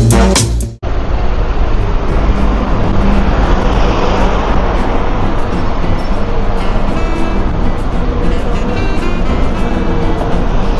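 Electronic music cuts off abruptly under a second in. Then steady city street traffic follows, with a minibus driving past close by and cars and buses running on the avenue.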